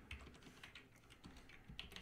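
Faint computer keyboard typing: scattered light keystrokes, a few more of them near the end.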